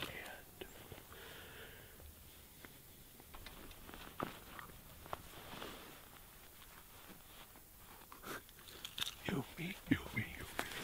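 Soft whispering between two people, with scattered small clicks and rustles, and a short burst of low voice near the end.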